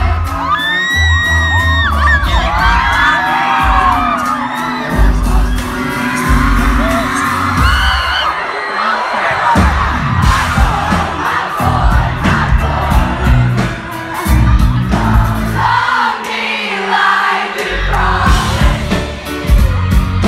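Live pop concert heard from within the audience: a woman singing over a heavy bass beat, with the crowd whooping. The bass drops out briefly twice, about halfway and again about three quarters of the way through.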